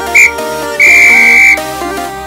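Electronic workout-timer beeps over electronic background music: a short beep, then one long beep lasting about three-quarters of a second, marking the end of the timed exercise.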